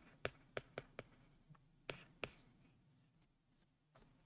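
Faint clicks and taps of a stylus writing a word on a tablet screen, about six in the first two and a half seconds.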